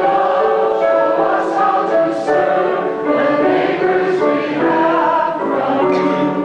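Choir singing a hymn, many voices holding long notes that move from one pitch to the next.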